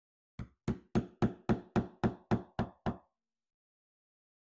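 Hammer striking a chisel into a wooden log: about ten quick, even knocks at roughly four a second, stopping about three seconds in.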